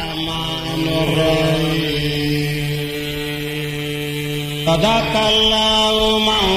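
A man's voice chanting Quranic recitation in long, drawn-out held notes, the melody shifting to a new pitch near the end.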